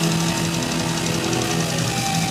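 Thrash metal band playing live: heavily distorted electric guitars on a low riff over drums and cymbals.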